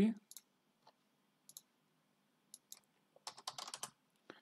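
Computer keyboard keys tapped: a few scattered single clicks, then a quick run of keystrokes a little after three seconds in.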